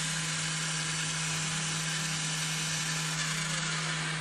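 Small electric motor whirring steadily at speed as it spins a colour disc.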